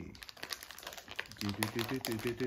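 Plastic blind-bag wrapper crinkling and crackling as it is pulled open by hand. About one and a half seconds in, a low voice starts humming a stepping tune over the crinkling.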